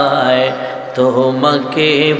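A man singing devotional verse unaccompanied in a slow, drawn-out melody, his held notes wavering in pitch. The singing drops briefly about halfway, then picks up again.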